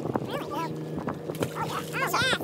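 A steady low engine hum runs throughout, with indistinct voices over it and a few light knocks.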